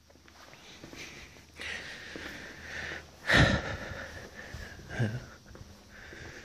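A man breathing close to the microphone: a loud, short breath about three seconds in and a smaller sigh near the end, over faint room noise.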